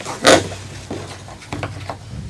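Handling noise as a violin is laid into its case on the floor: a short loud rustling burst near the start, then a few light knocks and clicks.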